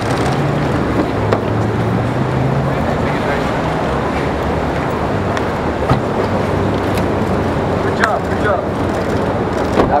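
Steady street traffic noise with a car engine running, under indistinct voices, with a few sharp clicks.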